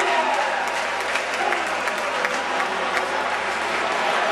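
Spectators applauding, with scattered sharp hand claps over a crowd's murmur of voices.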